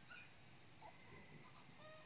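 Near silence, with a few faint, short chirps of distant birds, the last a small call near the end.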